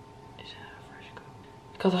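A woman's soft, breathy exhale, worn out after a hard workout; she starts talking near the end.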